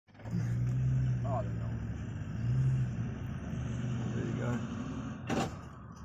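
Vehicle engine idling with a steady low hum that swells twice, with a sharp knock about five seconds in.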